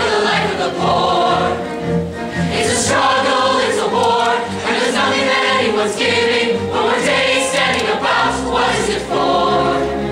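Large musical-theatre chorus singing together in long held notes over instrumental accompaniment.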